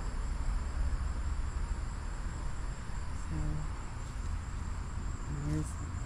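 Insects trilling steadily at one high pitch in the background, over a continuous low rumble.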